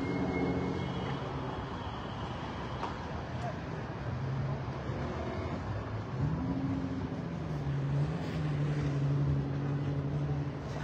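City street traffic noise with a motor vehicle's engine humming; its pitch rises about six seconds in and then holds steady.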